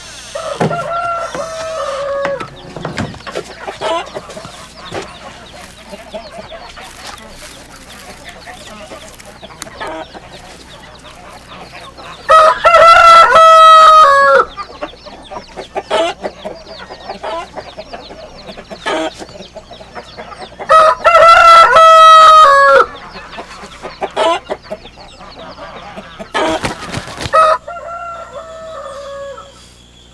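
A rooster crowing: two loud crows of about two seconds each, a third of the way in and again past two-thirds, each dropping in pitch at the end, with a fainter crow at the start. Chickens cluck in between.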